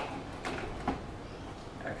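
Handling noise as a plastic-cased water heater is lifted and set down on a table: light rubbing with two short knocks, about half a second and about a second in.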